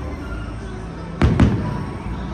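Two firework shells burst with sharp bangs, a fraction of a second apart, a little over a second in. The show's music plays steadily underneath.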